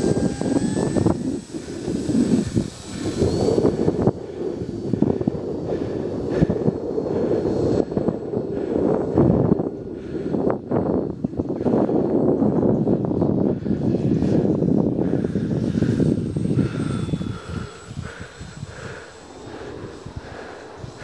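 Electric RC model plane (a Dynam Beaver) flying overhead: a thin, high motor-and-propeller whine that rises slightly near the start. It is mostly buried under wind rumbling and buffeting on the microphone, which eases off near the end.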